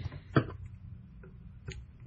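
Thread being wrapped onto a jig hook held in a fly-tying vise: a few short, sharp ticks, the loudest about half a second in, over a steady low hum.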